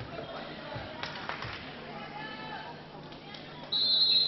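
Faint voices and background noise in a handball hall, then near the end a referee's whistle blows one short blast, the signal for the 7-metre penalty throw.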